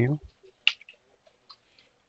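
A single sharp click about two-thirds of a second in, followed by a few faint ticks.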